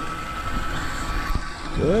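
Steady high whine of a remote-control boat's electric motor as it pulls a hooked bluegill toward shore, over a low rumble; a voice comes in near the end.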